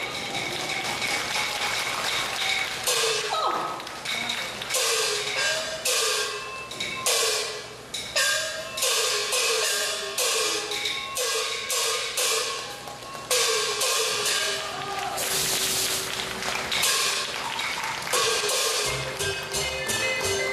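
Taiwanese opera percussion accompaniment: gong strokes, each ringing with a pitch that bends as it dies, together with sharp cymbal and wood-clapper strikes, played in quick irregular runs. Sustained instrumental tones join in near the end.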